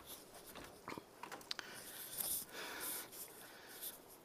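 Faint handling noise: soft rustling with a few small clicks as a hand-held tablet is moved about.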